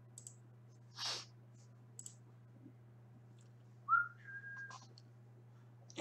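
A brief two-note whistle-like tone about four seconds in: a short rising note, then a higher note held for about half a second. Around it are a few faint clicks and a short hiss about a second in, over a steady low hum.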